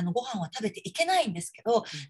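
Speech only: a woman speaking Japanese.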